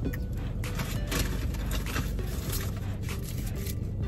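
Paper straw wrappers rustling and crinkling, with short scattered clicks of handling, over a low steady hum and faint background music.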